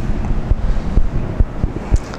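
Low, steady rumbling noise on a clip-on microphone, like wind or air moving over it, with a few soft knocks.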